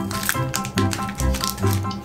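Background music with a steady beat, over the crinkle and rustle of a foil booster pack being handled and torn open.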